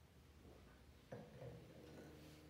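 Near silence: quiet room tone, with one faint soft knock about a second in.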